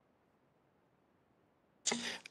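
Near silence with faint background hiss. Near the end a sudden sound cuts in as a microphone opens, the start of a man's voice.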